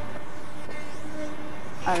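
Electric motor and propeller of a tethered round-the-pole model aeroplane in flight, a steady droning note whose pitch follows the propeller's speed.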